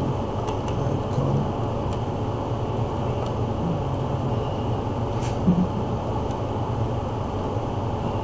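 Steady low background rumble. A few faint sharp clicks of computer keyboard keys being typed come over it in the first few seconds, with another click and a short low thump a little after five seconds.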